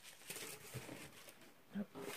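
Faint rustling and light knocks of a parcel and its contents being handled, with a brief murmur of voice near the end.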